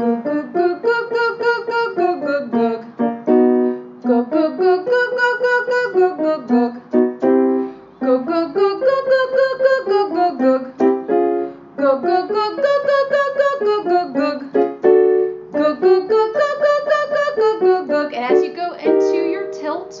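A woman's trained voice sings the 'goog' vocal warm-up syllable on a scale going up and back down over piano accompaniment. Five passes of about three and a half seconds each, with short breaks between them.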